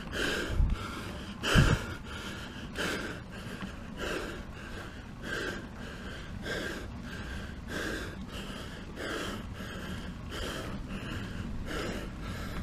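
A cyclist's heavy, rhythmic breathing close to the microphone, about one breath every second and a quarter: laboured breathing from pedalling up a steep 15% climb. A couple of low thumps on the microphone in the first two seconds.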